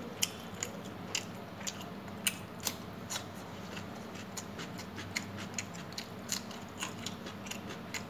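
Eating by hand: chewing and mouth sounds with irregular sharp wet clicks, about two or three a second, as rice and chicken curry are mixed and eaten from a steel plate.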